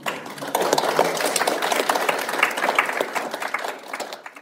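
Audience applauding, starting suddenly.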